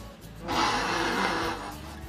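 A woman's stifled laugh, a breathy snort through the nose lasting about a second, over quiet background music.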